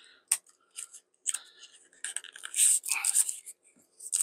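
Packaging being handled: a sharp click as a small cardboard accessory box is opened, then irregular crinkling and rustling of a plastic bag wrapped round a charging cable as it is lifted out.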